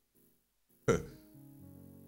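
Soft, sustained chords on a church keyboard playing underneath. About a second in there is a single brief loud burst of sound that dies away quickly.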